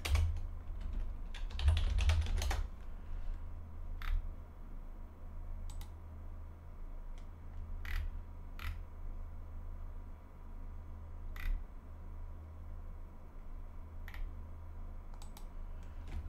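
Typing on a computer keyboard: a quick run of keystrokes about two seconds in, then single clicks every few seconds, over a steady low hum.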